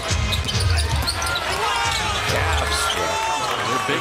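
Arena game sound during live play: a basketball being dribbled on a hardwood court, with sneaker squeaks and crowd noise.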